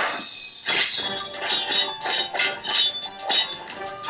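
Swords clashing in an animated fight: a quick string of metal-on-metal strikes, about two a second, each ringing like a bell, over background music.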